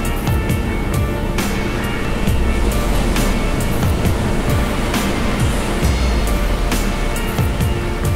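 Background music with a steady drum beat and bass.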